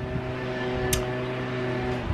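A machine running steadily nearby, a constant even-pitched hum, with one short click about a second in.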